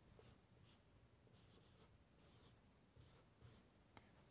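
Very faint strokes of a marker pen writing on a whiteboard: several short, scratchy squeaks.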